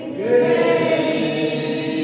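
Voices singing a devotional arati hymn together in long held notes, with a new note sliding up into place just after the start.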